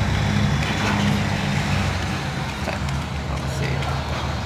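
Mercedes-Benz truck's diesel engine idling steadily.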